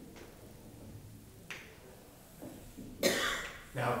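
Chalk on a chalkboard as curved lines are drawn: a light tap about a second and a half in, then a louder, short scratchy stroke about three seconds in. A man starts speaking at the very end.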